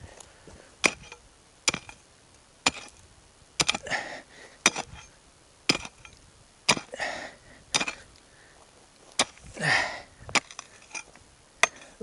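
Pickaxe striking hard, compacted ground in sharp, regular blows about once a second, some coming as quick doubles, with a few longer rough sounds in between.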